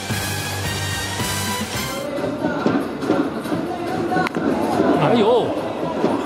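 Broadcast transition music that cuts off sharply about two seconds in. It gives way to baseball stadium crowd noise: cheering and wavering voices, with a single sharp knock about four seconds in.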